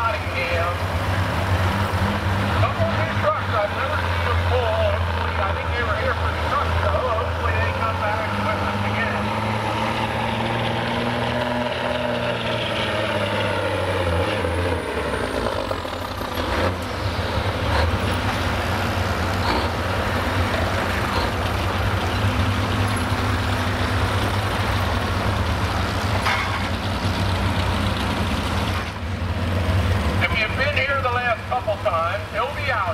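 Diesel semi truck's engine working hard under load while pulling a weight-transfer sled. Its pitch climbs and then falls away about halfway through, and a faint high whine drops off at the same time.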